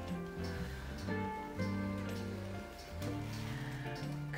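Background music: sustained notes that change about every second, with a light percussive tick.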